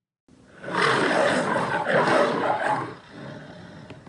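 A loud, noisy roar with no clear pitch that starts after a brief silence and dies away after about three seconds.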